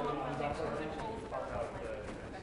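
Informal off-air chatter of people talking in a studio, with a laugh at the start and a few light knocks beneath the voices.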